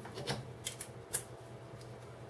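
Light clicks of small steel screwdriver bits and a bit adapter being handled and fitted together: about five short clicks, the sharpest a little after a second in.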